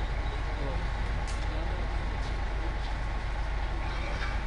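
Steady outdoor street ambience: a low, even rumble of traffic with a few faint clicks.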